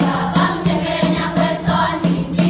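A children's choir singing a Kisii (Gusii) traditional harvest folk song in unison, over a steady beat.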